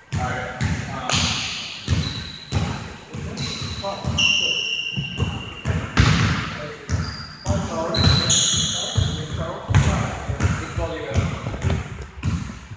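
Sneakers squeaking on a hardwood gym floor, several short squeaks, among repeated thuds of feet and ball on the court, with people talking.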